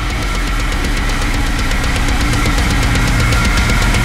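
Heavy metal riffing from a band's pre-production recording: distorted guitars over very fast, dense drumming with heavy low end, growing steadily louder.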